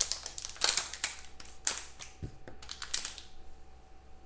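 Black foil trading-card pack torn open and crinkled by hand: a run of sharp crackles that thins out in the last second.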